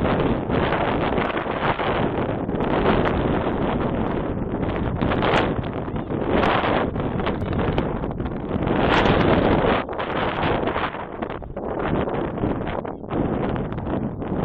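Wind blowing across the microphone, swelling and easing in gusts every second or two.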